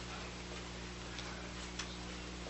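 A quiet pause holding only background noise: a steady electrical hum and hiss from an old recording, with a few faint clicks in the second half.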